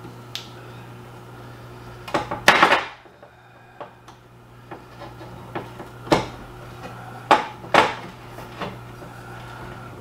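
Scattered clicks, scrapes and knocks of a tool picking at the hard wax seal on a whiskey bottle's neck, with a louder clatter of several knocks about two to three seconds in. A steady low hum runs underneath.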